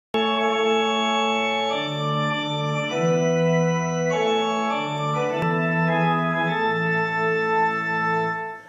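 Organ playing a hymn's introduction in slow, held chords that change about once a second, with a short click at the very start and another a little past five seconds in.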